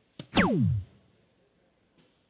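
A soft-tip dart strikes a DARTSLIVE electronic dartboard with a short click. At once the board plays its electronic hit sound, a loud tone sweeping steeply down in pitch over about half a second, scoring a single 20.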